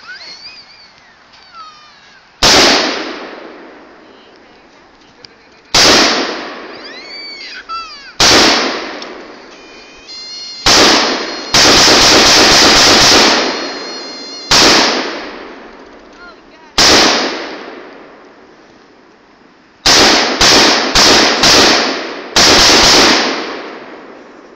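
Gunshots from an AR-15-style rifle: single shots a few seconds apart, each followed by a long echo, then a fast run of shots about half a second apart near the end, with two stretches where the shots come in a rapid continuous string.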